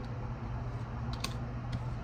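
A few light, sharp clicks, two of them close together a little after a second in, over a steady low hum.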